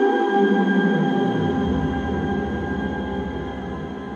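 Electronic drone from a Korg Volca Modular and Korg NTS-1 synthesizer: several held tones, with the bass sweeping downward over the first second and a half into a deep low note, and the whole sound slowly growing quieter.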